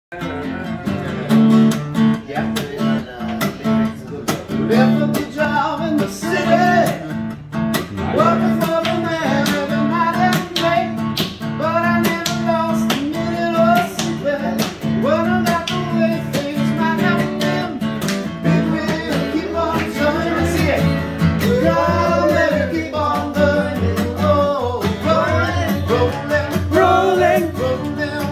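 Steel-string acoustic guitar strummed in a steady rhythm, with male voices singing along from a few seconds in.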